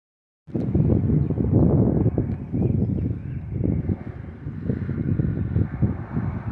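Wind buffeting the phone's microphone: an uneven, gusting rumble that starts about half a second in.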